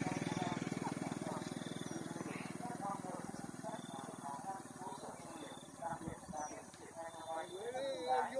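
Faint voices of people talking at a distance, over a low, rapidly pulsing rumble that fades away over the first few seconds.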